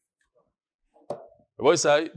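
Near silence with faint room tone for about a second, then a short mouth click and a man starting to speak.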